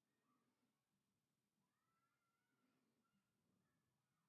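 Near silence: the track is almost empty between narration.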